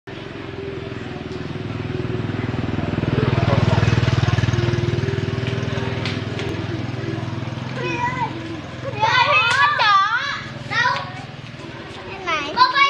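A motorbike passes along the street: a low engine hum grows louder to a peak about four seconds in, then fades. From about eight seconds, children's high voices call and shriek.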